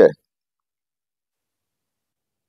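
The end of a spoken word just at the start, then silence, the sound track gated to nothing.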